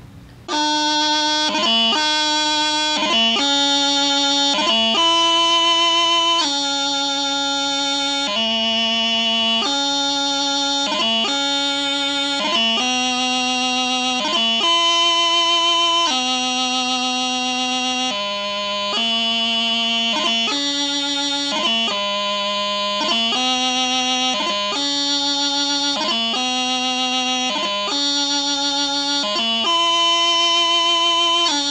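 Highland bagpipe practice chanter playing a slow piobaireachd melody: held notes of uneven length, joined by quick grace-note flicks, with no drones. The playing starts about half a second in.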